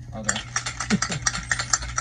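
Rapid, irregular crackling clicks from a Funko Soda can's packaging being handled and opened, with brief laughter.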